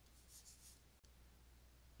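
Near silence: faint room hiss, with a slight scratchy swell about half a second in.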